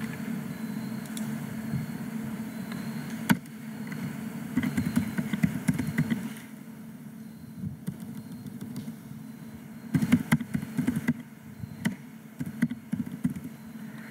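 Typing on a computer keyboard in short bursts of keystrokes, with one sharp click about three seconds in, over a steady low hum.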